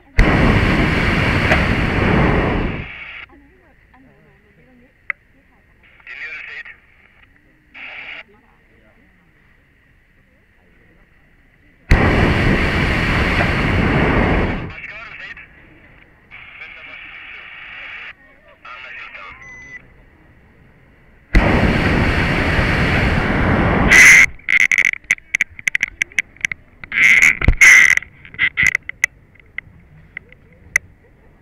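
Hot-air balloon's propane burner firing in three blasts of about three seconds each, the loudest sound, heard from inside the basket just below it. After the third blast comes a few seconds of sharp, irregular crackles and clicks.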